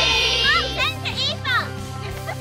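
Young girls' high-pitched voices shouting and calling out in short cries, over background music with steady low notes.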